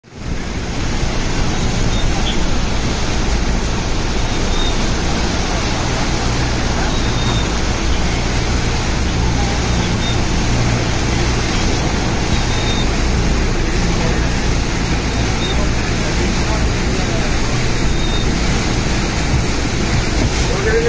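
Steady rushing noise of heavy cyclone rain, with a low steady hum underneath and no change in level throughout.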